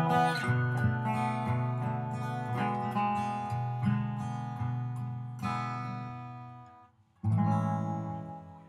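Acoustic guitar strumming chords that ring and slowly fade, with no singing. The sound cuts out briefly about seven seconds in, then one last chord is struck and rings out.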